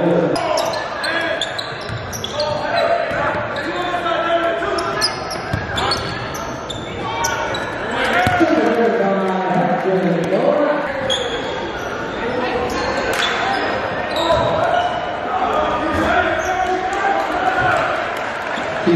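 Live basketball game in a gym: the ball bouncing on the hardwood court amid voices of players and spectators, echoing in the large hall.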